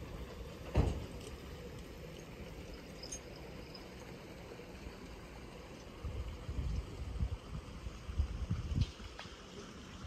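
Wind buffeting the microphone outdoors: a low rumble that comes in gusts in the second half, with a single knock about a second in.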